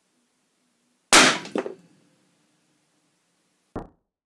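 Loud sharp bang of nitrocellulose packed into a spent brass shell casing detonating, set off by an exploding bridgewire detonator, about a second in. A second crack follows half a second later, then a short fading ring. Near the end a shorter, quieter bang is cut off abruptly.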